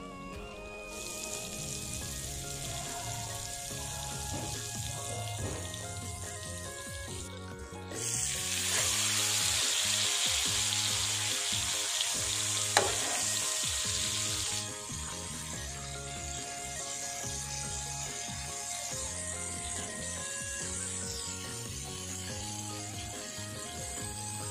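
Butter sizzling on a hot flat iron griddle, then much louder frying from about eight seconds in as a whole fish cooks in the fat. The sizzle drops back to a softer, steady hiss about six seconds later. A single sharp tap comes near the middle.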